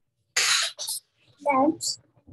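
A person coughing: one noisy cough and a shorter second one, followed by a brief spoken sound.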